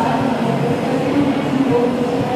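A handheld hair dryer running steadily, blowing air.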